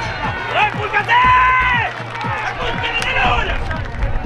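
Players and spectators shouting at an outdoor football match, with one long high shout about a second in. Underneath runs a regular low drumbeat, about three beats a second.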